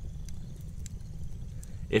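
Wood fire burning in a fire pit: a steady low rumble with scattered sharp crackles and pops.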